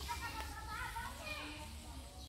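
Faint background chatter of several voices, children among them, talking in short broken phrases.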